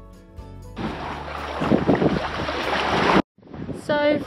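Strong wind buffeting the camera microphone, loud and gusting, after a brief tail of background music. It cuts off abruptly about three seconds in, then resumes.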